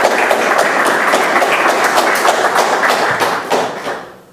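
Audience applauding: many hands clapping at once, dying away near the end.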